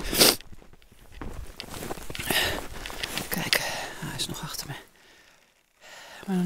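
Footsteps crunching through deep snow at a walking pace, stopping near the end. There is one short, loud burst of breath right at the start.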